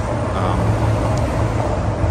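Skateboard wheels rolling on a concrete sidewalk: a steady low rumble.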